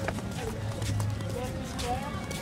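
Music and indistinct voices, with a few sharp slaps of flip-flop footsteps on concrete.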